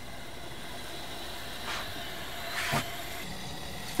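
Steady background hum and hiss, with two brief soft rustles a little before and after the middle.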